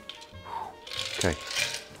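Soft background music, with the last of a stirred gin martini being strained from an ice-filled mixing glass into a martini glass in the first half, and a short spoken 'okay'.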